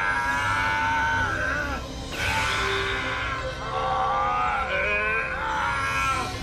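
Dramatic cartoon background score with long, sliding pitched lines, and a sweeping noise about two seconds in.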